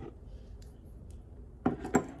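A small glass dropper bottle being picked up and handled: faint clicks, then two sharp knocks near the end as it is set down on the table.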